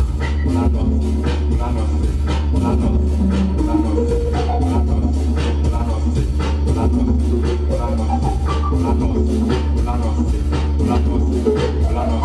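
Music with a steady, even beat and heavy bass, played loud over a sound system.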